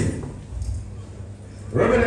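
A man's voice through a microphone: a phrase ending with a falling pitch, a pause of about a second and a half with only low background noise, then the next phrase starting near the end.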